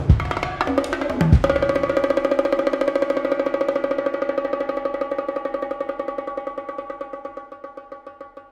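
Solo multipercussion drums struck with sticks: a few heavy strokes, including two deep booming hits in the first second and a half, then a fast, even stick roll whose drumheads ring at steady pitches as it slowly dies away.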